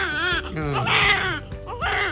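Newborn baby crying in repeated wails, each with a wavering pitch, over soft background music.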